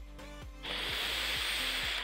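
A long drag on an e-cigarette: a steady hiss of air drawn through the device, starting about two-thirds of a second in and stopping at the end. Background music with a steady beat runs underneath.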